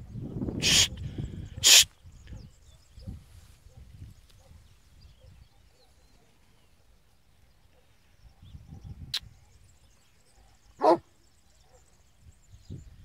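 Spanish mastiffs barking in short single barks: two loud barks about a second apart in the first two seconds, then one more loud bark near the end, with quiet stretches between.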